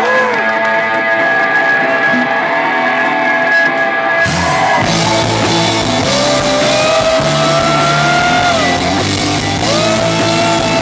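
Live rock band playing. For about the first four seconds, electric guitars ring out alone with sustained chords. Then bass and drums come in and the full band plays, with long held notes gliding in pitch.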